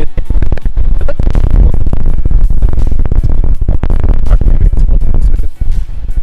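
Strong wind buffeting the microphone in a loud, gusty rumble, with music playing underneath.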